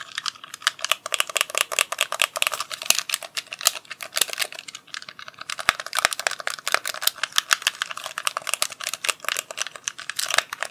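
Rapid, irregular close-up tapping and clicking of fingers near the microphone, many small sharp clicks a second with brief uneven pauses, like ASMR tapping.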